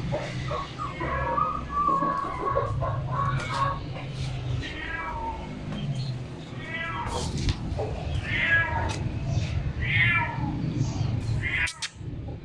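An animal's cries, repeated several times, each falling in pitch, over a steady low hum.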